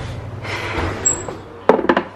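Metal baking sheet of macaron shells being set down on the counter, straight out of the oven: a quick cluster of sharp knocks near the end.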